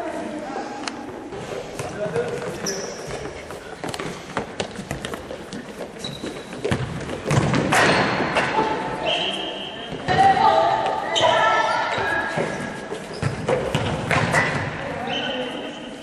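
Futsal ball being kicked and bouncing on a wooden gym floor, sharp knocks scattered through the play, with players calling out. Everything echoes in a large hall.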